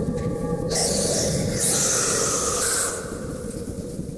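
Eerie horror sound-design swell: a low rumble under a loud, breathy hiss that comes in just under a second in and holds through the rest.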